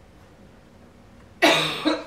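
Quiet room tone, then about one and a half seconds in a single loud cough lasting about half a second.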